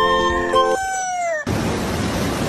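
Background music with held notes whose pitch slides down and breaks off, then a sudden cut about a second and a half in to the steady rush of a fast-flowing river.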